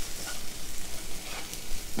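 Chopped onions and chillies sautéing in hot oil in a nonstick kadai, sizzling steadily as a spatula stirs them.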